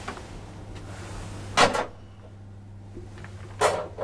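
Inside a KONE hydraulic elevator car: a steady low hum with two loud, short clunks about two seconds apart.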